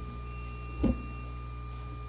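Steady low electrical hum with a thin high whine from a microphone and sound-reinforcement system, and one brief low sound a little under a second in.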